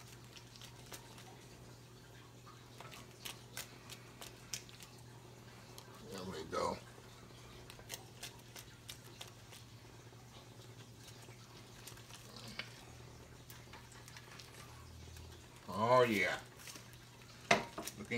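Silicone whisk stirring rice pudding in an enameled cast-iron pot: faint, scattered light ticks over a steady low hum. A short voice sound comes about six seconds in, and a louder one about sixteen seconds in is the loudest thing.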